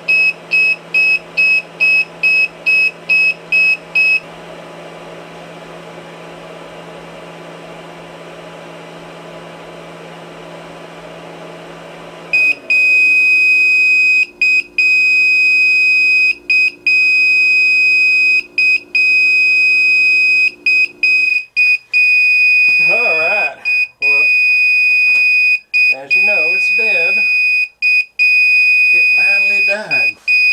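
Power inverter's low-battery alarm: rapid high-pitched beeps, about three a second, over the steady fan hum of a 250-watt ceramic heater running off a run-down 12-volt battery. The beeping stops for several seconds leaving only the hum, then from about twelve seconds in a near-continuous high alarm tone sounds with brief breaks, the heater having shut off on low battery.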